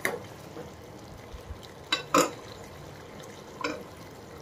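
Sugar syrup bubbling at the boil in a steel saucepan, being cooked to one-thread consistency, while a perforated steel skimmer is stirred through it and knocks against the pan: two sharp clinks about two seconds in and another near the end.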